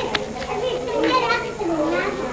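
Overlapping voices of children and adults talking at once, with two sharp clicks right at the start.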